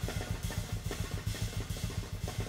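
Live drum kit played fast and hard: a dense, rapid run of bass and low drum hits with cymbal strikes over them.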